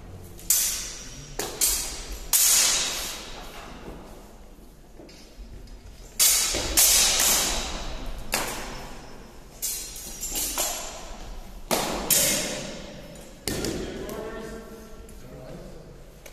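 Sword blades clashing in a fencing bout: a dozen or so sharp metallic strikes in quick clusters, each ringing out and echoing in a large hall. A voice calls out near the end.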